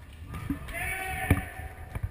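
Futsal ball struck on an indoor court: a short thud about half a second in, then a sharp, loud thump just past a second in, while a player shouts a long call.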